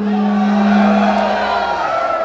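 One long held note, steady and then sagging slightly in pitch near the end, over crowd noise from a concert audience.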